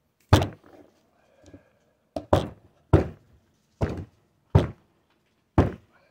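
About seven heavy, sharp strikes on the broken outer joint of a Toyota T100 front axle shaft, knocking it apart. Its bearing cup has blown apart inside.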